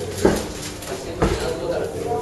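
Two short cries about a second apart, each dropping quickly in pitch, over background chatter.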